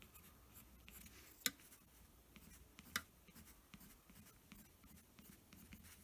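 Faint scratching of a pencil on paper in short, quick strokes as small lines are drawn, with two sharper ticks about a second and a half and three seconds in.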